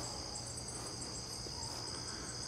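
Steady, high-pitched chorus of insects trilling without a break.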